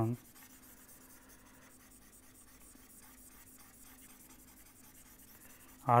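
Faint scratching of a stylus moving across a pen tablet as an equation is erased and written over.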